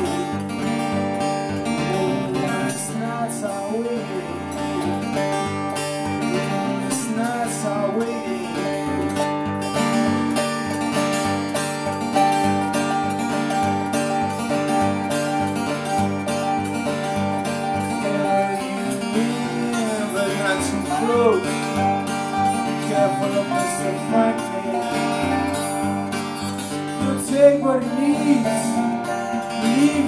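Instrumental passage of acoustic guitar with a lap steel guitar, the steel's slide notes gliding up and down in pitch over the steady picked chords.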